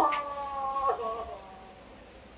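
A man wailing as he cries: one long drawn-out cry lasting about a second, then fading away.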